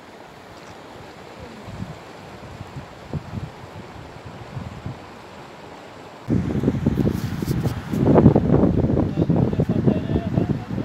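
Outdoor ambience: a faint steady hiss for about six seconds, then wind buffeting the microphone, starting suddenly and much louder, gusty and rumbling.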